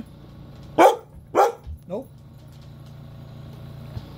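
A dog barking twice, about half a second apart, the loud barks of a dog demanding her walk.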